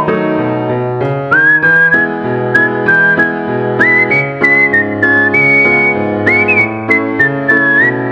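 Background music: a whistled melody that slides between notes, over a steady accompaniment of chords and bass notes.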